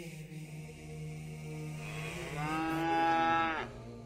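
A cow mooing: one long, low moo that swells louder about halfway through, then tails off and stops shortly before the end.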